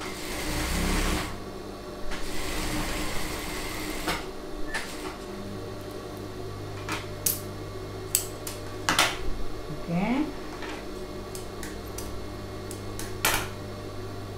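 Industrial sewing machine stitching piping onto fabric in two short runs in the first few seconds, then a steady low motor hum while scissors snip sharply a few times.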